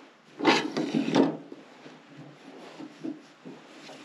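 Two short scraping, rubbing sounds about two-thirds of a second apart, then only faint background.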